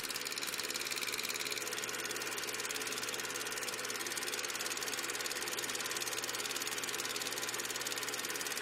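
Film projector running: a steady, fast, even mechanical clatter.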